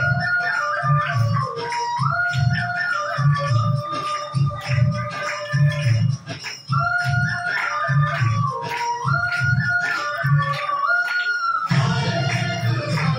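Recorded dance music with a steady drum beat and jingling percussion under a held melody line that steps up and down. It drops out briefly about six and a half seconds in.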